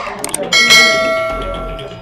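A bell chime sound effect, the notification-bell ding of a YouTube subscribe-button animation, struck once about half a second in and ringing as it slowly fades.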